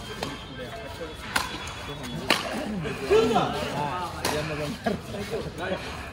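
Badminton rackets striking a shuttlecock in a rally: a few sharp hits about a second apart, with voices calling out between them, loudest about midway.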